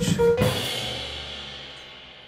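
A crash cymbal struck about half a second in, ringing out and slowly fading under a held low note, like the closing hit of a music track.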